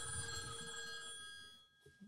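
A telephone bell ringing once, its ring fading away over about a second and a half.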